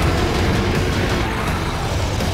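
A loud, continuous rumble of action sound effects for the giant robot dinosaur Zords, with background music mixed underneath.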